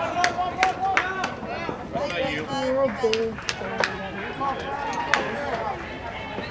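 Voices of players and spectators calling and talking around a youth baseball field, with several short sharp clicks scattered through.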